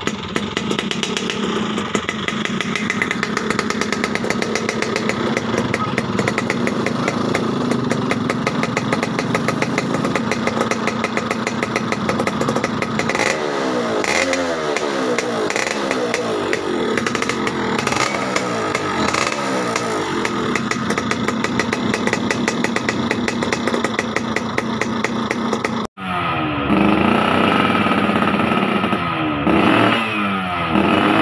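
Yamaha F1ZR two-stroke single running through an aftermarket racing expansion-chamber exhaust, first running steadily, then given a series of quick throttle blips that rise and fall about halfway through. Near the end the sound switches abruptly to a second motorcycle being revved.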